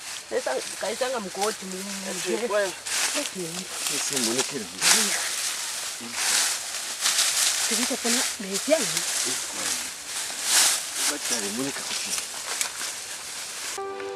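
Leafy bushes and dry grass rustling in bursts as someone pushes through them, with a voice making wordless vocal sounds between the rustles.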